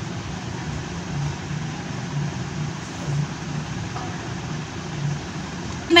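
A steady mechanical background hum with hiss, and a low throb pulsing about twice a second.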